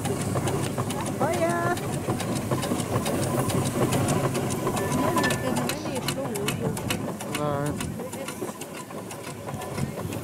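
Four-inch-scale Foster steam traction engine running as it drives slowly past, with a quick, even beat of clattering motion.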